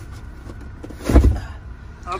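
A heavy boxed bench vise set down on the floor: one dull thump a little after a second in, over a steady low rumble.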